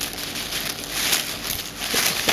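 Paper wrapping rustling and crinkling as it is handled by hand.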